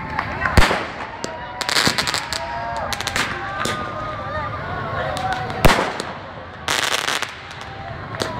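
Fireworks going off: a sharp bang about half a second in and another, the loudest, near six seconds, with bursts of rapid crackling in between.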